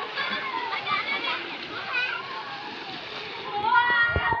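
Children splashing in a shallow swimming pool, a steady wash of splashing water under many high children's voices calling out.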